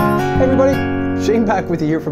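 Fingerpicked steel-string acoustic guitar in drop D with a capo: a last chord is struck right at the start and left ringing. A man's voice comes in over the fading notes about halfway through.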